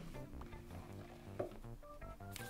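Quiet background music with repeating notes. There is a single short sound about one and a half seconds in, as the lid of a cardboard box is lifted off.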